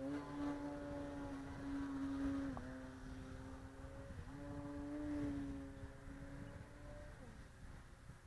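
Skywing 55-inch Edge RC aerobatic plane's motor and propeller running as a steady buzzing tone. Its pitch dips briefly about two and a half and four seconds in as the throttle is worked, then falls away near the end as the throttle comes back.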